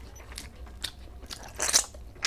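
Close-up eating sounds of rice and fish curry eaten by hand from a steel plate: fingers working wet rice on the metal, and chewing, with scattered small clicks and one louder crunchy burst near the end.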